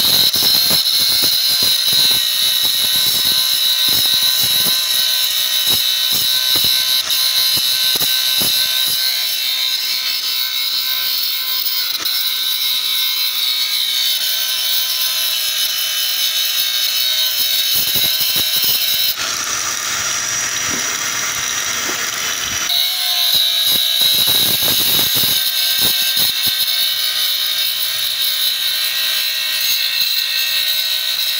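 Electric angle grinder running continuously with a steady high whine as its disc grinds rust off a steel sheet. For about three seconds past the middle the sound shifts to a higher, thinner tone, then returns to grinding.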